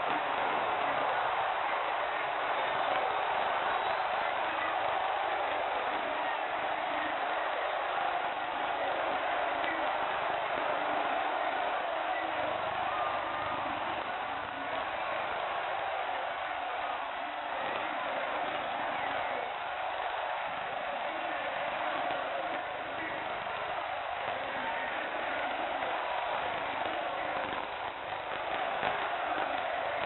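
Football stadium crowd cheering in celebration at the end of the match: a steady, dense wash of many voices with no single voice standing out.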